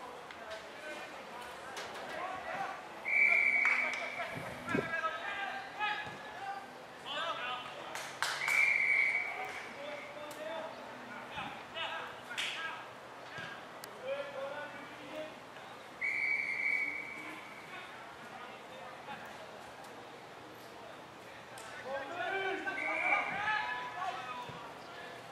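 Umpire's whistle blown in three short, single-pitched blasts, several seconds apart, with players' shouted calls between them and rising again near the end.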